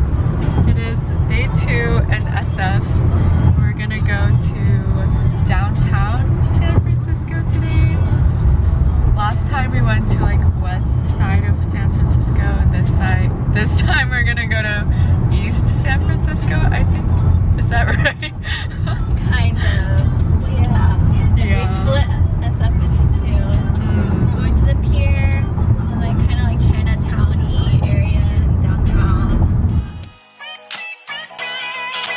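Steady low road rumble inside a moving car's cabin on a freeway, with music and people's voices over it.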